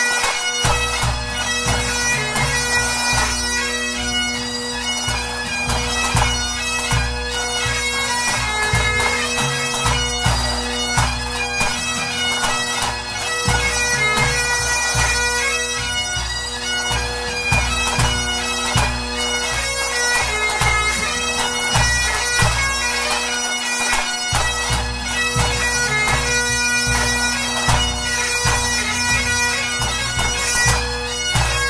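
Pipe band playing a march, strathspey and reel set: Highland bagpipe chanters over steady drones, with drums beating beneath.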